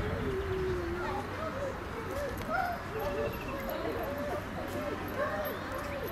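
Indistinct voices talking in the background, no words clear, over outdoor ambience.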